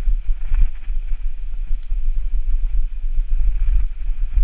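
Wind buffeting the microphone of a bike-mounted or rider-worn camera, over the rumble of mountain bike tyres rolling down a gravel trail, with a few knocks from the bike jolting over the ground.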